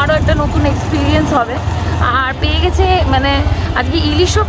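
A woman speaking over a steady low rumble.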